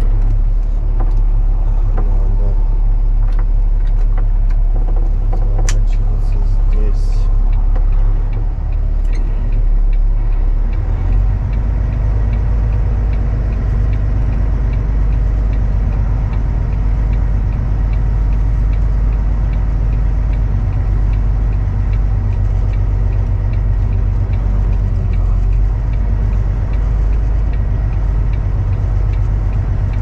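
Kenworth W900L heavy-haul truck's diesel engine running at low speed, heard from inside the cab as the rig is slowly manoeuvred. It is a steady, loud low drone whose pitch shifts about a third of the way through. A few short clicks or knocks sound in the first part.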